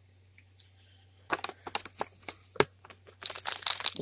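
Foil blind bag being torn open and crinkled by hand: scattered sharp crackles begin about a second in and grow denser near the end.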